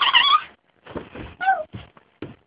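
High-pitched young voices in the first half second, then a short meow that falls in pitch about a second and a half in, among a few faint knocks and rustles.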